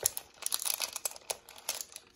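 Clear plastic bag of small plastic gems crinkling in the hands, a quick run of irregular crackles as it is squeezed and pulled at to open it.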